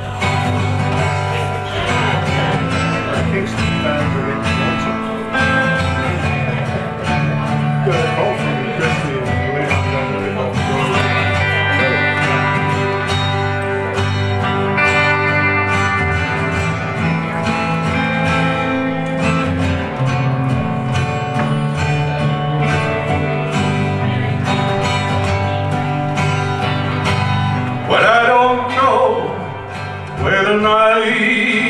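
Two acoustic guitars, a Harmony Sovereign jumbo and a Gibson Southern Jumbo, playing a live country song's instrumental intro: a steady strummed rhythm with picked lead lines over it.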